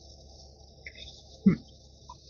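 A person drinking from a mug, with one short throaty sound about one and a half seconds in as she swallows. A faint steady high-pitched hiss runs underneath.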